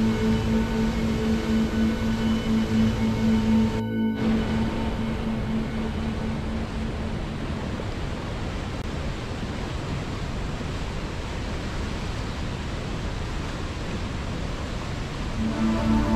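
Rushing river water, a steady noise, under slow held notes of ambient music. The music fades away after about five seconds, leaving only the water, and comes back just before the end.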